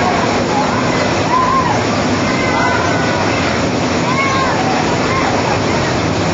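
Steady, loud rush of falling water, with voices of a crowd murmuring faintly underneath.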